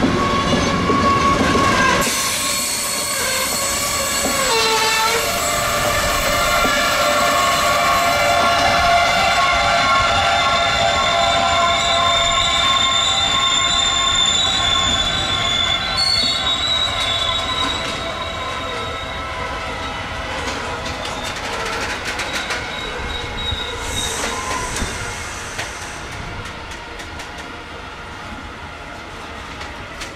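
Freight train of open box wagons rolling slowly through a curve, its wheels squealing against the rails with several high, shifting tones. The squealing fades over the last ten seconds.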